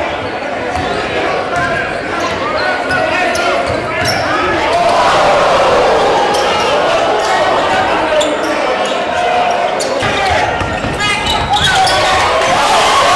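A basketball dribbled on a gym's hardwood court, with the voices of players and crowd over it, in a large echoing gymnasium.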